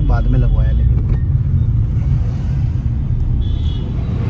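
Steady low rumble of engine and tyre noise inside the cabin of a manual petrol Maruti Brezza on the move, with the 1.5-litre four-cylinder petrol engine running under way.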